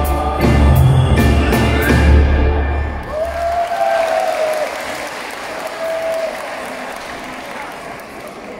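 A live band with a singer finishes a song: about three and a half seconds in, the bass and drums stop, and the audience applauds, with a voice calling out twice over the clapping as it fades.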